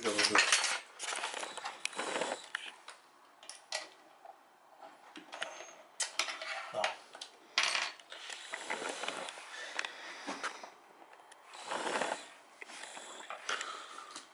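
Intermittent clinks, knocks and rattles of loose screws, washers and hand tools against a wooden table frame and its metal corner brackets, in short scattered bursts, as the frame is unbolted.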